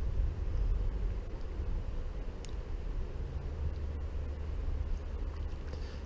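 Low, steady outdoor rumble with a faint hiss over it, and a single faint tick about two and a half seconds in.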